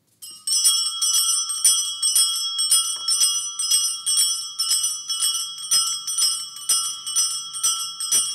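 Altar bells: a cluster of small bells shaken over and over, about three shakes a second, ringing steadily from about half a second in. The ringing marks the moment the monstrance with the Blessed Sacrament is raised for Benediction.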